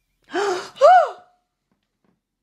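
A woman gasps sharply in distress, then lets out a short anguished cry whose pitch rises and falls.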